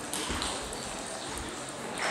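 Celluloid table tennis balls clicking sharply off paddles and tables, several quick strikes of rallies in play.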